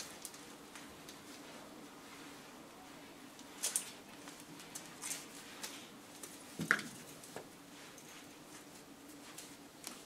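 Faint rustling of dress fabric being handled and adjusted at the waist: a few brief rustles, the loudest about two-thirds of the way in, over a low steady hum.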